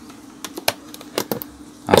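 Scattered light clicks and taps of a stingless-bee hive box being opened by hand, its clear cover sheet lifted off the wooden box, with a faint steady hum underneath.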